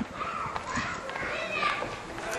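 Indistinct background voices of people and children talking, with no clear words, at a moderate level.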